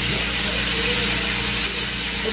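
Bacon strips sizzling steadily in a hot frying pan, with a steady low hum underneath.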